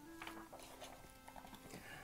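Soft background music with long held notes, and a faint rustle of a picture-book page being turned near the end.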